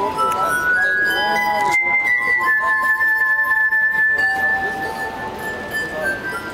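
Glass harp: stemmed glasses tuned with water, their rims rubbed with wet fingertips, sounding sustained pure ringing tones. Several notes sound together. The melody steps upward over the first couple of seconds, then one high note is held for a few seconds over lower notes.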